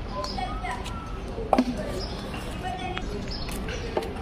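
A single sharp knock about one and a half seconds in, over faint voices in the background.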